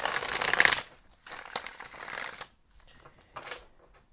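A deck of tarot cards being shuffled by hand: a loud burst of shuffling in the first second, then a quieter stretch of shuffling for about another second, with a faint flick of cards near the end.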